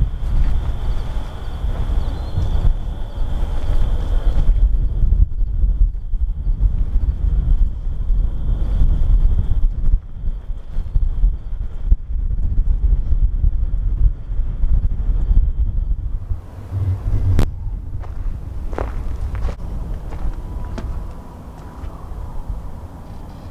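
Wind buffeting the camera microphone in a steady low rumble, with footsteps on dry dirt. A thin steady high tone runs until about three-quarters of the way through, and a few sharp clicks come near the end.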